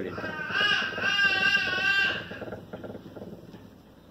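A child's high-pitched, wavering cry lasting about two seconds, then fading out.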